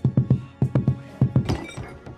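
A quick run of heavy thumps, about five a second, over film score music.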